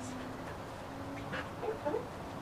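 A few short animal calls about halfway through and near the end.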